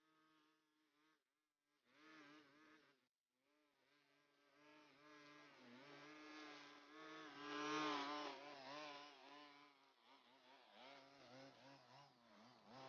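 Faint high buzz of a gas string trimmer's small two-stroke engine, its pitch wavering up and down as the line cuts grass. It cuts out briefly twice in the first few seconds.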